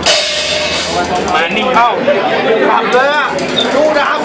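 A drum-kit cymbal crash at the very start, ringing out over about a second, followed by crowd voices shouting and chattering in a loud, crowded club.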